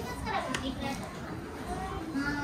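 Indistinct, wordless voices: short pitched vocal sounds rising and falling, with no clear words.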